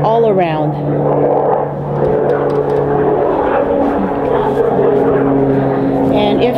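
Propeller aircraft flying overhead, a steady drone of several held tones.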